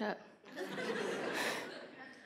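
Audience laughing at a joke, swelling about half a second in and dying away near the end.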